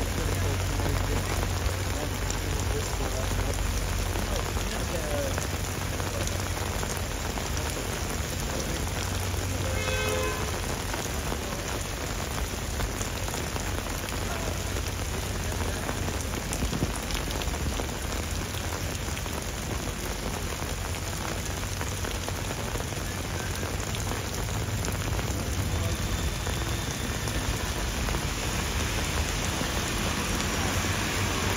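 Heavy rain pouring down and splashing on hard ground: a steady, even hiss with a low rumble underneath. A brief high-pitched tone cuts through about ten seconds in.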